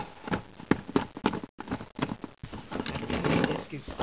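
Plastic Lego robot handled and knocked against a cardboard floor: a run of irregular sharp clicks and taps.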